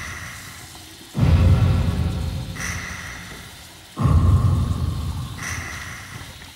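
Dramatic suspense background score: two sudden low hits, about a second in and about four seconds in, each fading out slowly, with high held tones sounding between them in a repeating pattern.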